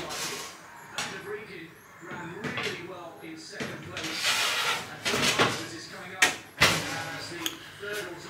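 A baking tray is pushed into an oven with a scraping hiss, then the oven door is shut with two sharp knocks a little after six seconds in.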